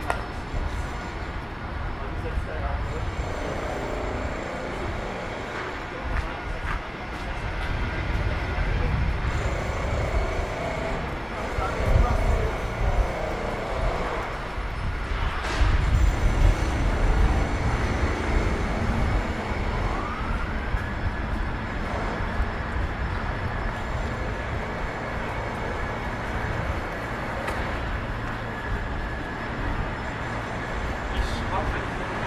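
City street traffic noise: a steady low rumble that swells twice in the middle. About two-thirds of the way through, a whining tone rises and then holds steady.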